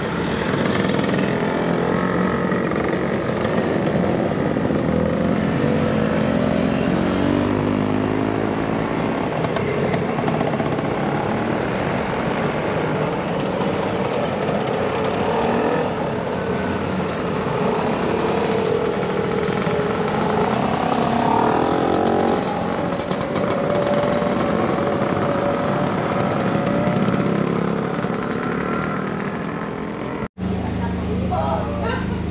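A stream of motor scooters riding past one after another, their small engines revving and pulling away. The engine pitches rise and fall as each scooter passes, over a steady, continuous engine noise.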